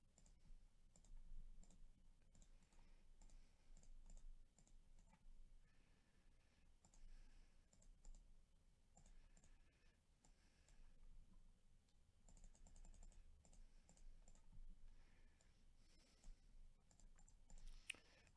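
Faint, scattered clicks of a computer mouse and keyboard, irregular throughout, over a low steady hum.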